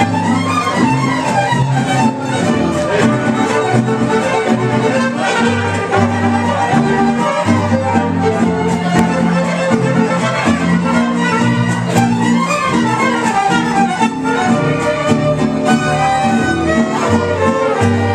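Mariachi band playing an instrumental passage: a bowed violin melody with quick runs over a moving bass line from the guitarrón and strummed guitars.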